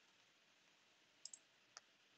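Near silence broken by three faint computer keyboard clicks in the second half, two in quick succession and then one more.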